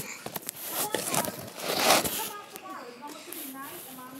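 Phone microphone being handled at close range: knocks and clicks, then a loud rushing rub about two seconds in, with faint children's voices near the end.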